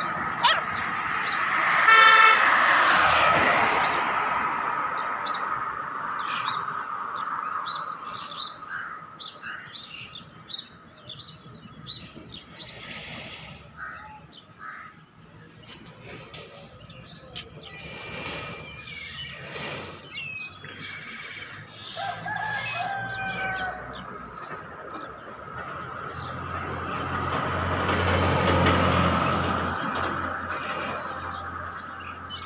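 Outdoor ambience: many short bird chirps, with passing road traffic that swells early and again near the end, and a vehicle horn sounding about two seconds in.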